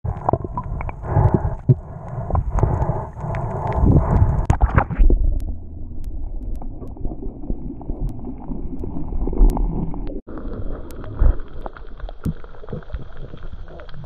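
Muffled underwater sound from a camera in its waterproof housing: a low rumble of moving water with scattered sharp clicks. The sound changes abruptly about five seconds in and again about ten seconds in.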